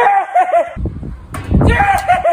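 A young man shouting "¡Sí!" over and over in high-pitched excitement, celebrating a hit. A loud, noisy low rumble fills the gap between the shouts.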